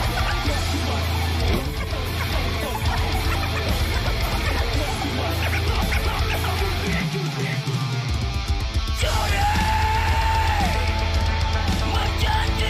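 Heavy metal band music: distorted guitars and drums, part of a metal cover of a dangdut song. The bass drops out briefly about seven seconds in, and a long held note follows from about nine seconds in.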